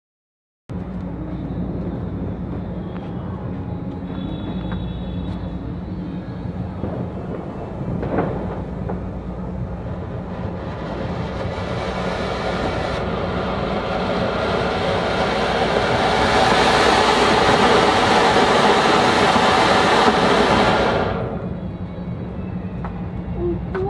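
Atlas Colour Koti (anar), a ground fountain firework, burning: a steady rushing hiss of sparks that grows louder through the middle and then stops abruptly near the end.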